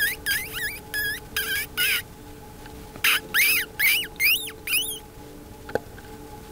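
A predator call imitating a mouse squeaking, used to lure a fox: two series of short, high-pitched squeaks that rise and fall in pitch, about six, a pause of about a second, then four more. A single faint click near the end.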